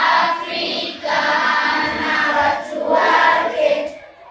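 A choir of schoolchildren singing together in sung phrases broken by short pauses.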